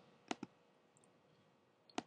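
Two quick computer mouse clicks close together about a third of a second in, against near silence.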